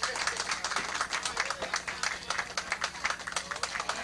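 Audience applauding, a dense run of many hands clapping, with voices talking over it.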